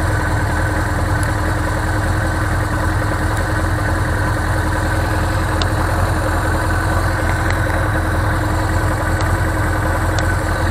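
1978 Suzuki GS750E's air-cooled inline-four engine idling steadily in neutral.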